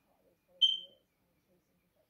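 A single short, high-pitched beep about half a second in, fading out quickly.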